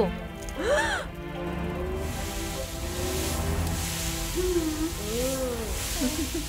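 A cartoon sound effect of a fire hose spraying water, a steady hiss that starts about two seconds in, over steady background music.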